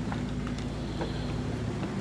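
Boat engine running steadily with a low, even hum, with a couple of faint clicks.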